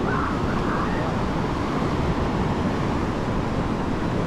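Steady rush of surf and wind buffeting the microphone, with faint distant voices in the first second.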